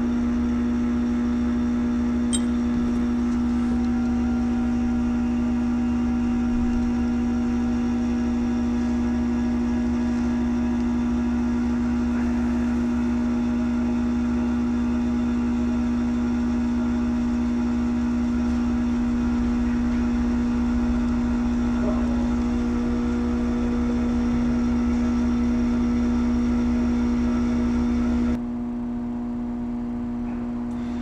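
B7 Volkswagen Passat's ABS pump motor running under scan-tool activation, a steady loud electric hum, while the brakes are bled to purge air trapped in the ABS module behind a soft pedal. Near the end the sound drops suddenly in level and loses most of its higher buzz.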